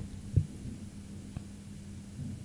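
Low steady electrical hum with a single dull low thump about half a second in and a faint click about a second later.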